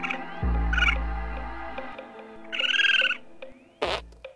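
Edited comedy sound effects with music: a deep boom about half a second in that fades over about a second and a half, a short warbling call near three seconds, and a sharp hit just before the end.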